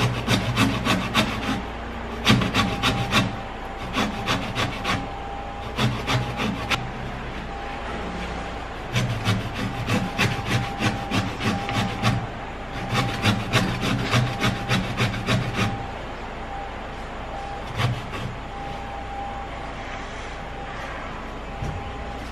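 Lemon rubbed up and down a stainless steel flat grater to grate off the zest: about six bursts of quick rasping strokes with short pauses between them, and a single stroke near the end. The grater is one the user calls not sharp.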